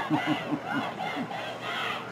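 A man laughing: a quick run of short 'ha's, each dropping in pitch, dying away after about a second and a half.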